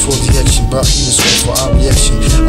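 Hip hop track: a rapping voice over a beat with heavy bass.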